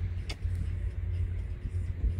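Low, fluttering rumble of wind buffeting the microphone, with one brief click about a third of a second in.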